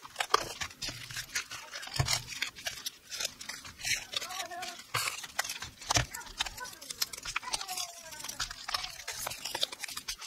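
Self-adhesive postage stamps peeled off a roll and pressed onto plastic bubble mailers: scattered quiet clicks, crinkles and taps of paper and plastic being handled.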